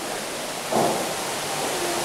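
Steady hiss of room tone and recording noise through the lecture microphone, with no speech.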